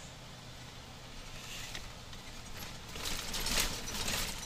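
Semi-truck cab noise while driving: a steady low engine drone under road noise, with a louder, rougher rattling stretch about three seconds in.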